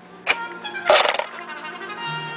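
A sharp click, then about a second in a louder rough burst of noise, as an audio cable is plugged into a different input of a homebuilt passive mixer; music from a CD player then comes through the speaker noticeably louder.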